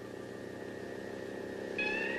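Steady electronic sci-fi drone of several held tones, the spaceship ambience of a 1960s monster-film soundtrack. Near the end a higher tone comes in, rising slightly.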